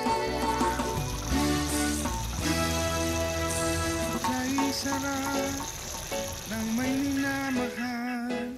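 Background music: a song with held and sliding melody notes.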